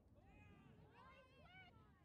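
Faint, distant shouting from several voices: drawn-out, high calls that overlap one another, getting busier about a second in.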